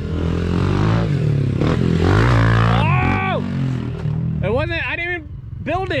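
Small single-cylinder pit bike engine revving, its pitch climbing and dropping through the first few seconds, then settling lower. People's voices shouting in the second half.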